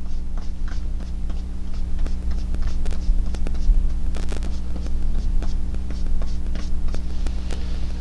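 Steady low electrical hum, with faint irregular taps and scrapes of a paintbrush dabbing acrylic paint onto a canvas.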